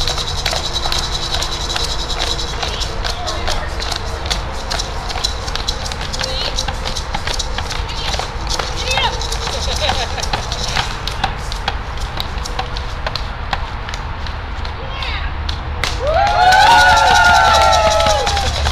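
Low, indistinct voices of a small outdoor gathering, with scattered small clicks and a low rumble. Near the end, several voices rise into a long held chanted note.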